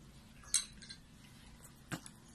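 Tableware clinking on a dinner table: two short, sharp clinks, the louder one about half a second in and a second just before the end.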